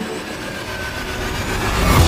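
A swelling noise sweep that builds up toward the end, a transition effect in the background music between two sections of the track.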